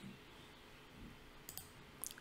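Near silence with a couple of faint computer mouse clicks about one and a half seconds in.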